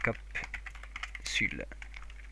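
Computer keyboard typing: a quick run of keystrokes through the first second, with a brief snatch of voice about a second and a half in.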